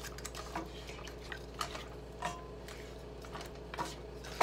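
Wooden spatula knocking and scraping against a frying pan while wet raw chicken pieces are turned over in their marinade, in scattered irregular clacks. A steady low hum runs underneath.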